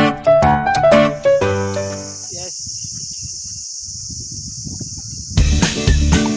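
Piano-like intro music for about a second and a half, giving way to a steady high-pitched insect chorus, typical of crickets in tall grass. About five seconds in, loud music with a beat starts over it.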